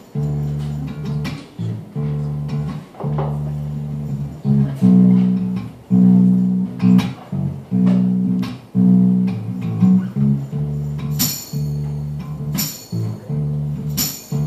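Electric guitar playing an instrumental intro of slow, repeated low held notes in phrases about a second long, with a few sharp percussive taps near the end.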